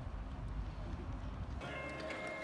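Outdoor background noise with a low rumble. About one and a half seconds in, it cuts abruptly to the steady hum of a car's cabin with a faint high tone.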